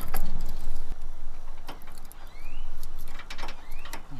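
A stainless steel locking hitch pin is slid through a trailer hitch receiver and shank, giving short metallic scrapes and a few sharp clicks as the lock cap goes on, with a set of keys jingling. A low steady rumble runs underneath.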